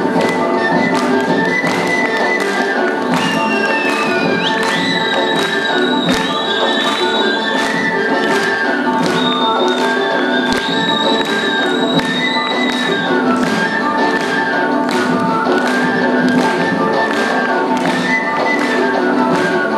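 Albanian folk dance music with a steady drum beat, about two strikes a second, under a melody, with high held notes sliding in the middle stretch.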